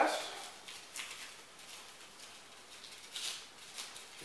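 Faint rustling and a few light clicks of a small draw item being handled and opened by hand, with a brief louder rustle about three seconds in.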